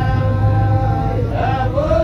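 Background music: a male voice chanting a wavering, drawn-out melody over a low steady hum.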